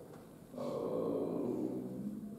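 A man's drawn-out voiced hesitation sound, held at a steady pitch for about a second and a half from about half a second in.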